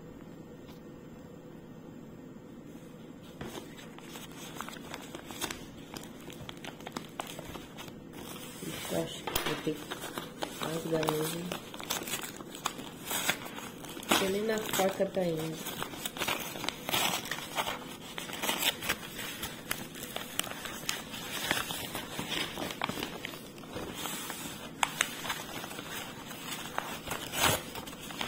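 Brown kraft-paper parcel wrapping and clear packing tape picked at and torn open by hand: irregular crinkling and ripping of paper and tape, starting a few seconds in.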